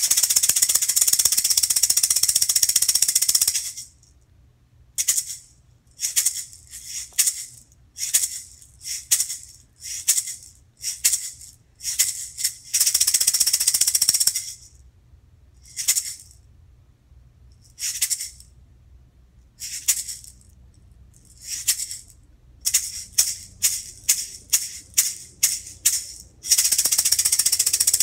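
A single maraca shaken at changing speeds: a fast continuous shake for about three and a half seconds, then single shakes at uneven spacing, another long fast shake in the middle, more scattered single shakes, a quicker run of separate shakes, and a long fast shake again near the end.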